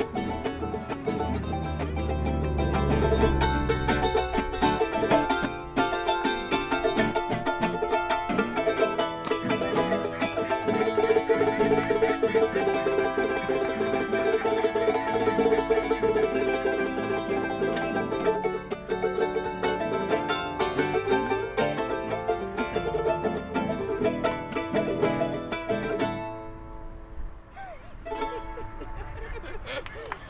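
Nylon-string classical guitar and charango strummed together in a lively song, with a voice singing along. The playing stops about 26 seconds in.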